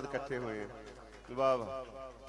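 A man's voice at the microphone in drawn-out phrases that bend in pitch, the loudest phrase about one and a half seconds in.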